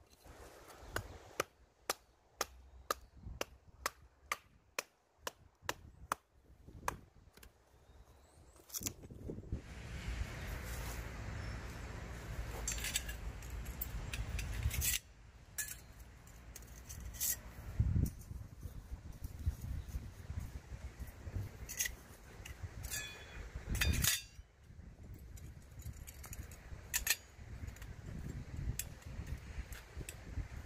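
Wood being chopped into kindling with a blade, sharp strikes at about two a second for the first nine seconds. Then a stretch of steady rushing noise. Then the stainless-steel parts of a mini wood stove clinking and knocking as they are fitted together, with two louder knocks.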